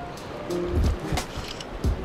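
Background music with held notes and a steady beat.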